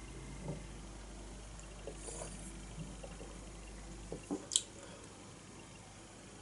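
Quiet sipping and swallowing of beer from a glass, with a few small wet mouth sounds and a short, sharper click about four and a half seconds in.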